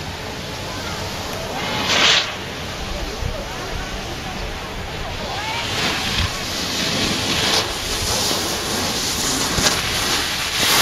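Rushing wind noise on the microphone, with a brief louder rush about two seconds in. The scrape of a snowboard sliding over snow grows louder toward the end as the rider comes close.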